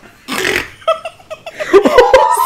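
Laughter: a breathy burst of laughing near the start, then short broken giggles.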